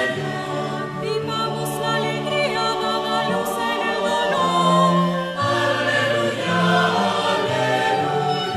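Choir singing a Taizé chant in slow, held harmony, the low part moving to a new note every second or so.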